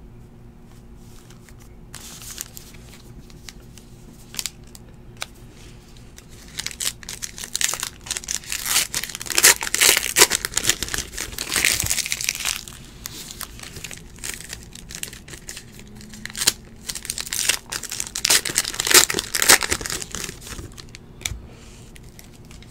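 Card-pack packaging crinkling and tearing in two bouts, the first about a third of the way in and the second about three quarters through.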